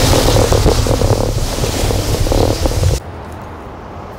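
Wind buffeting the camera microphone in loud, rumbling gusts, mixed with the crunch of footsteps in loose sand. It cuts off abruptly about three seconds in, leaving a much quieter outdoor background.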